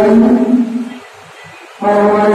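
A man's voice singing long, held notes with a steady pitch: one phrase fades out about a second in, and the next begins near the end.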